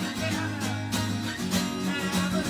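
Acoustic guitar strummed in a steady rhythm, ringing chords with repeated strokes across the strings.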